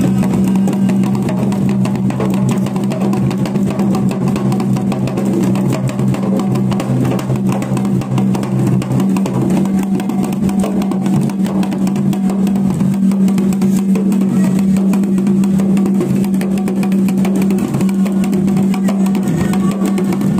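Fast, steady drumming, dense strikes with no break, over a continuous low droning tone.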